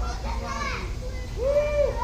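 Children's high-pitched voices calling out, the words unclear, with a loud rising-and-falling call near the end, over a steady low rumble.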